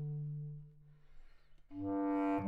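Bass clarinet: a held low note dies away within the first second, a brief near-quiet gap follows, and a new, higher note comes in sharply near the end.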